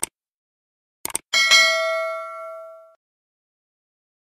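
Subscribe-button animation sound effects: a short click, then a quick double click about a second in, followed by a bright notification-bell ding that rings and fades away over about a second and a half.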